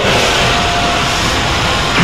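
Anime energy-beam sound effect: a loud, steady rushing noise as a ki blast streaks through the air.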